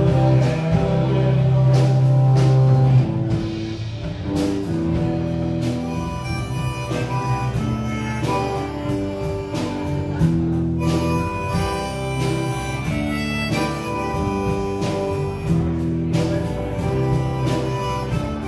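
Live rock band playing an instrumental passage: electric guitar, bass and a drum kit with cymbals keeping a steady beat under a held lead melody. It is loudest in the first few seconds and eases slightly after that.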